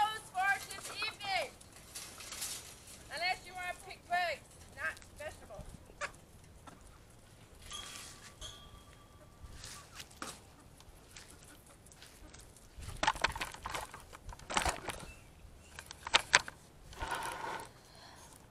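Chickens squawking and clucking in quick runs of short, high calls over the first few seconds, as they are chased out of a garden. Later come rustling and knocking handling noises as the camera is picked up.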